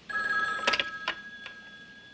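Black desk telephone's bell ringing: a ring that starts abruptly and dies away, with a few sharp clicks as the handset is picked up.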